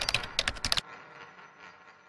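Typing-style sound effect: a quick run of about eight sharp clicks in under a second, then a faint tail fading away.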